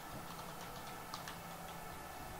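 Faint, irregularly spaced light clicks over a low steady hum in a quiet room.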